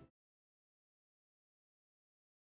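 Digital silence: the room sound cuts off abruptly right at the start, and nothing follows.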